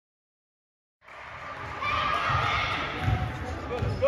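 Silent for about the first second, then a basketball being dribbled on a gym floor, a few bounces under a second apart, with players' and spectators' voices over it.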